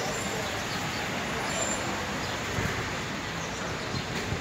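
Street ambience: steady traffic noise with people talking in the background.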